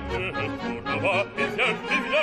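Opera singer with a symphony orchestra, singing a string of short notes with a strong vibrato.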